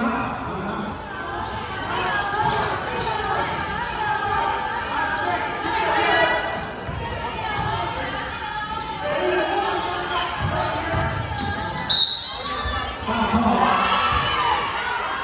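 Basketball dribbling on a hardwood gym court during play, with spectators' voices throughout and a sudden sharp loud sound near the end.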